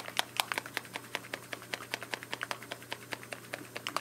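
A marble rattling inside a small bottle of graphite-and-ink mix as it is shaken: a quick, irregular run of sharp clicks, several a second. The marble is the agitator that stirs the graphite powder into the ink.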